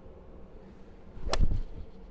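A golf club striking a ball once, a single sharp crack about a second and a half in.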